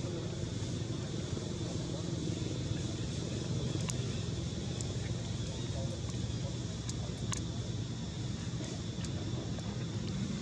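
Steady low rumble of outdoor background noise, with a few faint sharp ticks about four, five and seven seconds in.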